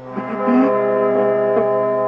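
Music from a black metal / DSBM demo track: a held, droning chord swells up at the start, with a few short notes struck over it.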